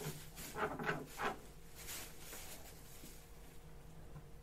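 A pet making a run of short scratching, rustling noises, several close together in the first second and a half and a couple of fainter ones after.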